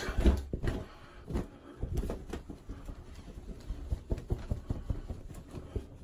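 Irregular soft slaps and taps of wet hands patting a menthol aftershave splash onto the face and neck, with a cluster of louder pats in the first second.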